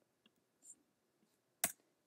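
Near silence with a faint tick, then a single sharp click of a computer key near the end: the press that deletes the selected headline text.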